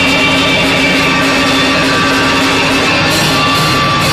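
Loud live band music: a drum kit with cymbals played under steady held notes, with no breaks.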